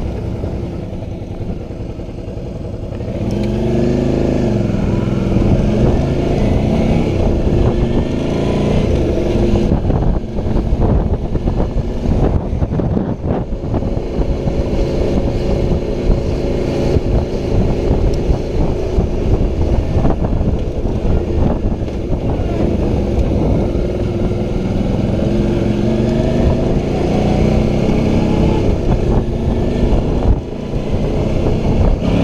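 Suzuki V-Strom motorcycle engine pulling away and accelerating, rising in pitch in several steps from about three seconds in, then again near the end. Between these, wind buffets the helmet-mounted microphone.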